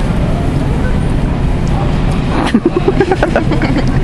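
A loud, steady low rumble, with voices and laughter breaking in over the last second and a half.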